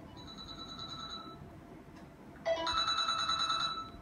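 Electronic desk telephone ringing with a warbling trill, two rings: a faint one at first, then a louder one from halfway through.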